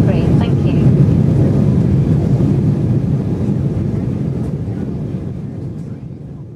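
Steady cabin noise of an Embraer 195 airliner in flight: the low rush of its GE CF34 turbofans and airflow heard from a window seat. It fades out over the last few seconds.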